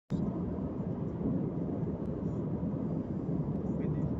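Steady low rumble of a car being driven at road speed, engine and tyre noise heard from inside the cabin.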